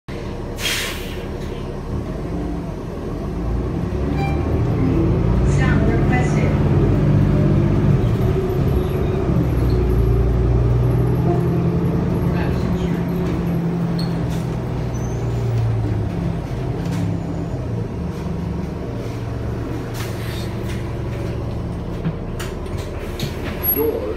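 Interior sound of a 2019 New Flyer XD35 transit bus under way, its Cummins L9 diesel and Allison B400R automatic transmission running. The engine builds from a few seconds in, holds, then eases off about two-thirds of the way through. A short hiss sounds near the start.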